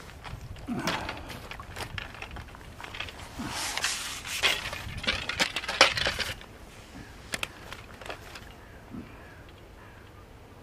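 Handling noises from a landing net and fishing tackle as a netted fish is dealt with: a run of clicks, knocks and rustles for about six seconds, then it goes much quieter.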